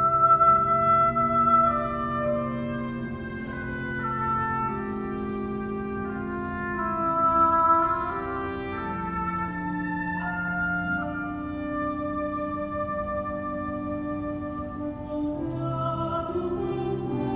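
Orchestra playing a slow introduction: an oboe carries the melody over long held notes from the strings.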